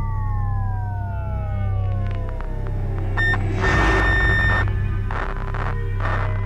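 Soundtrack sound effect and score: a slowly falling electronic whine that winds down over about three and a half seconds, like power dying, then a burst of static-like noise lasting about a second, all over a steady low drone.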